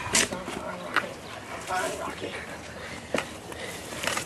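A few sharp clicks or knocks, three in all, with a faint, indistinct voice underneath.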